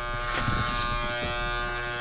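Electric hair clippers buzzing steadily while cutting a man's hair.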